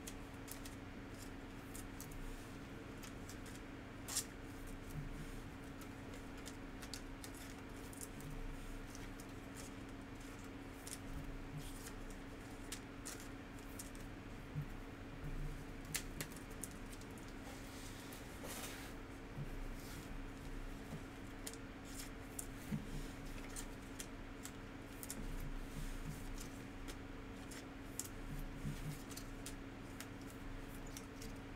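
Trading cards and clear plastic card sleeves handled close to the microphone: scattered light clicks and rustles, with one longer swish about two-thirds of the way through, over a steady low hum.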